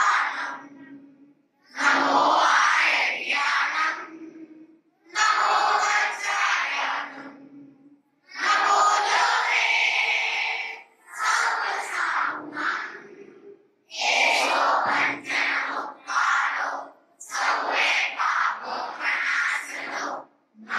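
A small group of female voices singing unaccompanied into a microphone, in phrases of one to three seconds separated by short pauses, some notes held.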